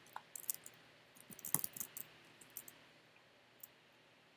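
Faint keystrokes on a computer keyboard typing a short command: a quick run of clicks over the first two and a half seconds, then one more keystroke near the end.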